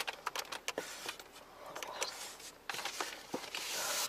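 Small clicks and light knocks of a hand handling things in a car's glove box, then a rustle building near the end as items are pulled out of it.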